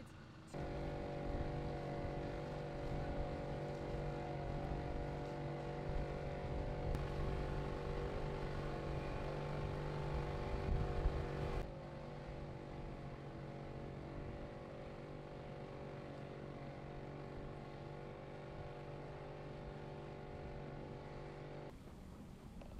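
Boat engine running at a steady speed, an even drone with a fixed pitch that drops a little in level about halfway through.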